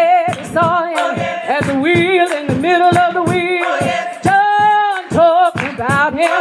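A cappella gospel singing by a small group of voices, a male lead with women singers, in a call-and-response song. The phrases have held notes with a wavering vibrato and short breaks between them.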